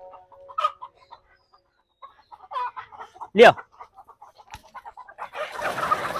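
Chickens clucking in a coop, a run of short calls, with one short loud call about three and a half seconds in. A scuffling, rustling noise rises near the end.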